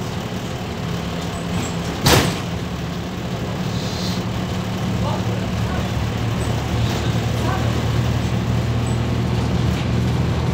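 MAZ 206.085 city bus heard from inside the cabin while under way, its Mercedes-Benz OM904LA four-cylinder diesel running steadily. A single sharp knock about two seconds in, then the engine note drops lower and grows a little louder.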